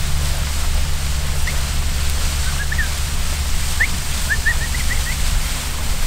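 A steady low rumble runs underneath, the loudest sound. Over it a bird chirps a run of short, quick, rising high notes from about a second and a half in until about five seconds.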